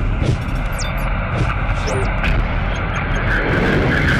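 A loud, steady rumble with a few short sweeping high tones: the sound-effect bed of a TV news programme's closing montage, with a voice faintly mixed in.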